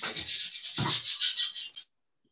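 Rubbing and scratching noise picked up by a video-call participant's microphone, in quick strokes about four or five a second, with two dull knocks, about a second apart. It stops suddenly just before two seconds in.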